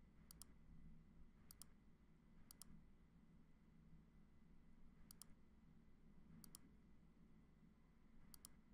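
Faint computer mouse clicks over near-silent room tone: five times, each a quick pair of clicks, spaced about a second or more apart.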